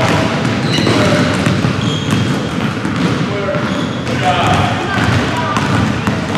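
Several basketballs being dribbled at once on a hardwood gym floor, the overlapping bounces ringing in the large hall, with brief high shoe squeaks among them.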